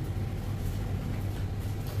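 A steady low background hum.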